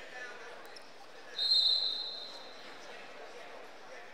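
A referee's whistle blows once, a single steady shrill note lasting under a second, about a second and a half in, over the steady murmur of the crowd in a large gym.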